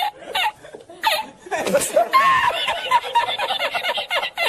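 A man laughing hard. The laugh starts choppy and then builds, about one and a half seconds in, into a long, high-pitched laugh that breaks rapidly and rhythmically.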